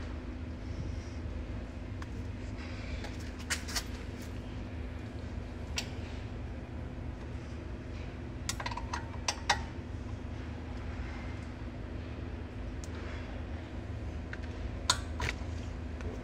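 Sharp metallic clicks and taps in a few small clusters, from a combination spanner being fitted to and worked on a brake caliper's bleed nipple, over a steady low hum.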